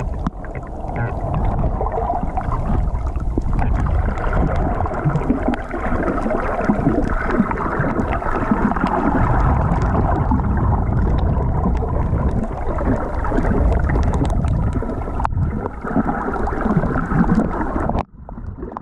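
Muffled underwater noise picked up by a submerged camera: a steady low rumble with swishing and gurgling of water moving past the camera, dipping briefly a few times.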